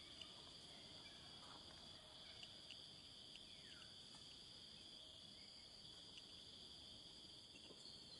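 Faint, steady, high-pitched chorus of insects, with a few faint short chirps over it.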